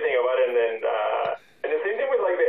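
Speech only: a person talking continuously, with a thin, telephone-like sound.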